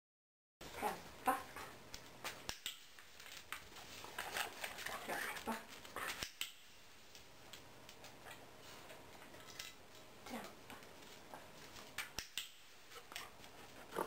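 A husky vocalizing in several short falling calls, with sharp clicks scattered throughout.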